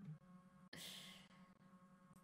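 A single short breathy exhale, like a sigh or a soft laugh out through the nose, about a second in, over a faint steady hum; otherwise near silence.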